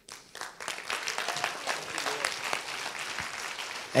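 Congregation applauding: a dense, steady patter of many hands clapping that swells up within the first second.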